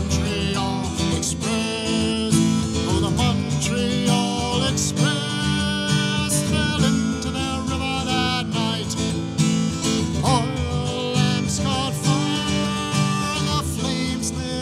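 Solo folk ballad performance: an acoustic guitar strummed steadily with a man's singing voice over it.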